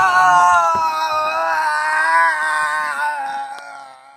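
A teenage boy's long, high-pitched scream, a drawn-out "No!", held for about three seconds. It sinks slowly in pitch and fades away near the end.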